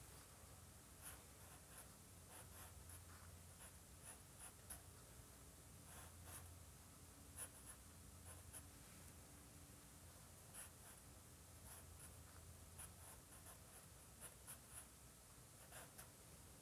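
Faint, irregular short scratches of a compressed charcoal stick on drawing paper as small marks are sketched in.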